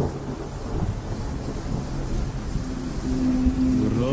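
Steady rain with low rumbling thunder. A single held note sounds for about a second near the end.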